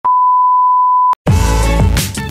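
A steady, high, single-pitch test-tone beep, an editing sound effect over a glitch transition, holds for just over a second and cuts off with a click. After a brief gap, electronic intro music with a heavy bass beat starts.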